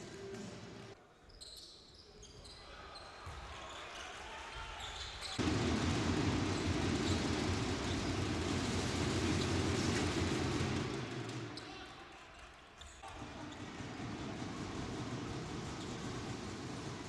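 Arena sound of a basketball game: a ball bouncing on the hardwood court amid crowd noise, which grows much louder for several seconds in the middle.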